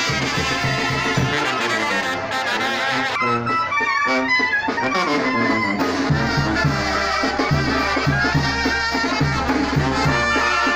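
A brass band playing, with a steady beat in the bass of about two pulses a second setting in about six seconds in.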